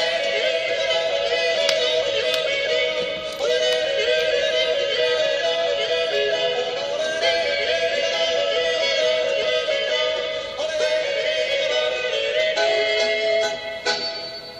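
A male voice yodeling over the song's instrumental accompaniment, the song's closing yodel, ending on a long held note.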